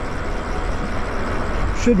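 Wind rushing over the microphone and tyre noise from an e-bike rolling along a paved road: a steady deep rumble under an even hiss.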